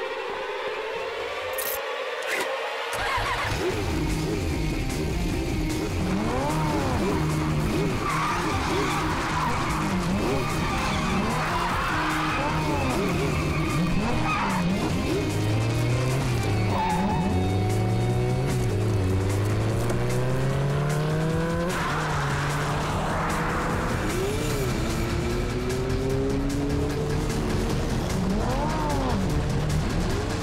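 Sports motorcycle engine coming in about three seconds in and revving up through the gears, its pitch climbing and dropping again and again, under background music.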